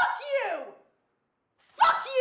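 A woman's wordless angry cries, two of them about two seconds apart. Each starts sharply and falls in pitch.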